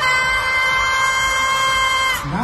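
A single voice holds one long, steady high note right after a count of three. The pitch slides down as it ends.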